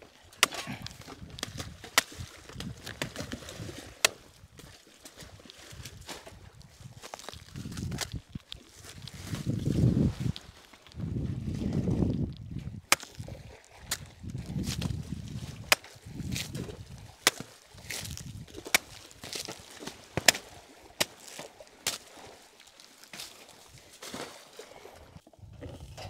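A machete chopping a banana plant's stem into pieces: sharp chops at irregular intervals, about one every second or two, with low rustling between them.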